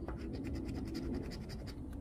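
A lottery scratch-off ticket being scratched, its coating rubbed off in quick, rapid strokes.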